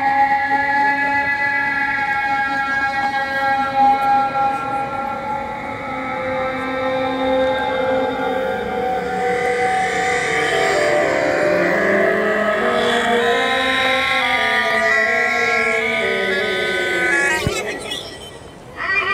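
Electronic tones from a gesture-controlled smartphone sound app: several sustained, layered pitches that glide slowly up and down, breaking into short stepped pitch changes in the last few seconds.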